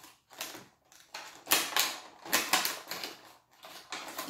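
Clear plastic blister packaging being handled and flexed, giving an irregular run of sharp crackles and clicks.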